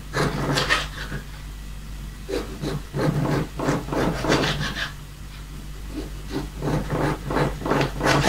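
A kitchen knife sawing through a dry-cured sausage onto a cutting board: rasping strokes come several a second in three runs, with short pauses between them.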